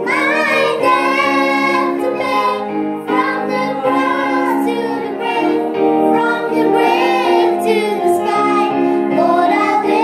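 Children singing a song, led by a girl's voice on a microphone, over electronic keyboard chords.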